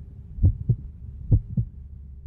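Heartbeat sound effect: a low double thump, lub-dub, heard twice, a little under a second apart, over a faint steady hum.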